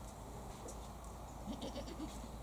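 A goat bleating faintly, one short call about one and a half seconds in.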